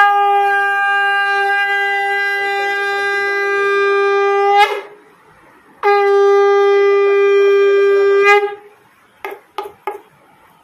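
A shankh (conch shell) blown as a horn: two long, loud blasts, each held on one steady note, the first about four and a half seconds and the second about two and a half, with a break of about a second between them.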